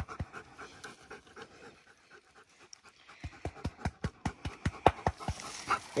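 Redbone coonhound panting rapidly with its mouth open, faint at first and growing louder and quicker from about halfway through.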